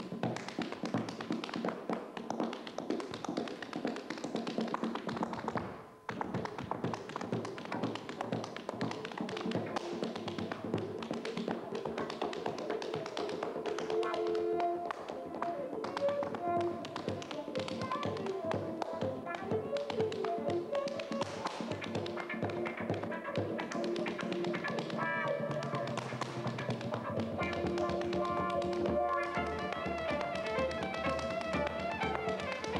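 Irish step dancer's shoes beating rapid rhythms on a wooden stage floor, with a brief break about six seconds in. From about halfway a fiddle tune plays along with the steps.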